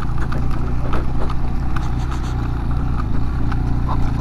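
Small motorcycle engine running steadily while riding up a rough gravel track, with scattered short clicks and rattles from the stony surface and the bike.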